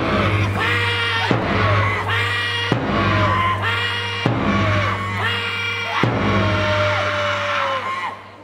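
Male cheer-squad members bellowing long, held calls in unison, five in a row about every one and a half seconds, each call falling away at its end. Each call opens with a sharp hit.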